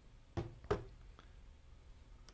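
Two brief, faint knocks about a third of a second apart, then a fainter tap: hard photo gear being set down on a tabletop.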